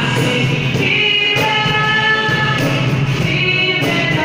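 Live Bengali song sung by a male singer through a microphone, accompanied by strummed acoustic guitar and a cajon keeping a steady beat, heard through a hall's PA.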